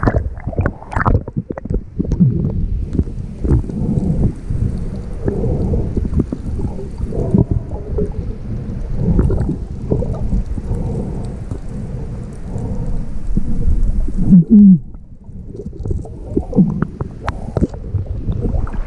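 Underwater sound picked up by an action camera in its housing: a muffled low rumbling of moving water with gurgles and small clicks. It grows quieter near the end, then splashes as the camera breaks the surface.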